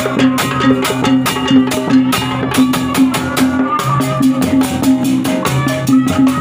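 Sundanese obrog music, a drum-led ensemble playing a quick, steady beat under a sustained melody.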